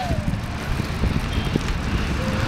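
Low, irregular rumble of wind buffeting the camera microphone.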